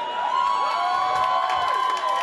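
Comedy-club audience cheering, with several long whoops held over one another.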